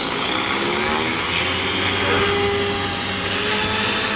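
450-size electric RC helicopter spooling up: a motor and gear whine rises in pitch over the first second or so as the rotor comes up to head speed, then holds steady.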